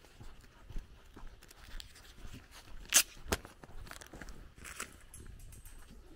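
Footsteps crunching on a dirt and gravel road at walking pace, with two sharp clicks about halfway through, the first the loudest sound.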